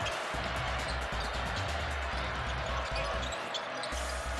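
Live basketball court sound in an arena: a steady crowd din, with a basketball dribbled on the hardwood floor in repeated low bounces.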